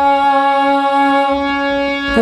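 Harmonium holding one steady, reedy note with no change in pitch.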